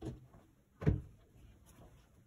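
A single dull thump on a wooden cutting table about a second in, as folded cloth is lifted and handled, with low handling noise around it.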